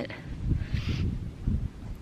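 Wind buffeting the microphone in low, uneven gusts, with a short hiss about a second in.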